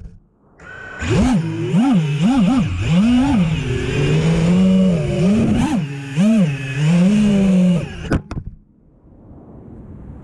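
Motors and three-blade 5-inch props of an FPV quadcopter (EMAX LiteSpec 2207 2400 KV) whining, the pitch swinging up and down quickly with the throttle. The whine stops abruptly about eight seconds in as the quad sets down on the pavement, leaving a faint hiss.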